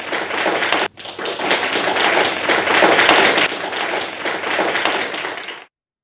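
Audience applauding, loudest about halfway through, with a brief dropout about a second in, then cut off suddenly near the end.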